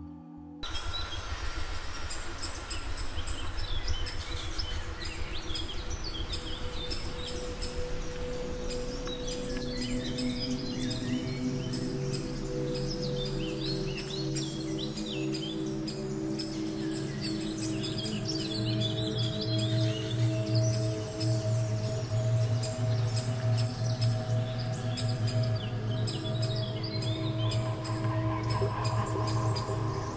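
Many small birds chirping and singing over ambient music made of sustained droning tones. The low drone swells louder about two-thirds of the way through.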